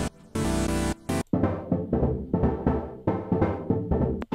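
Synthesizer chord pattern played over a low bass line while instrument presets are auditioned: a held, bright chord from Bitwig's FM-4 synth, then after a brief break about a second in, a run of short plucky chords from a Polysynth preset.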